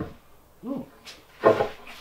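Wide mahogany boards being lifted and shuffled against one another: short wooden knocks and rubbing, with a few separate knocks between about half a second and a second and a half in.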